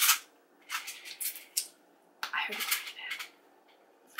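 Candy being eaten and handled close to the microphone: several short crisp crackles and clicks, with a brief murmur about two and a half seconds in.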